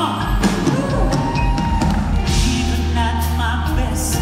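Live gospel song: a male voice singing with band accompaniment of drums and bass, including a long held note.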